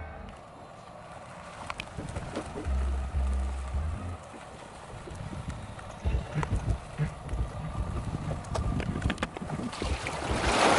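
Boat trailer rolling backward down a grooved concrete launch ramp, heard from a camera mounted on the rig: a low rumble, then scattered knocks and rattles. Near the end the trailer wheels reach the water and a rushing splash begins.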